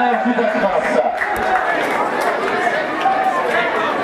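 Chatter of several voices talking at once, with a steady crowd murmur underneath.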